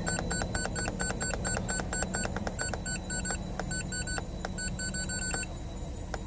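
OTC Genesys EVO scan tool beeping with each keypress while scrolling its data list: short, clicky beeps about four a second with brief pauses, over the steady low hum of the car's engine idling.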